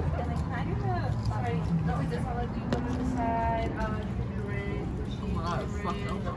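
Background chatter of several diners talking at once in a busy restaurant, with no one voice standing out, over a low steady hum.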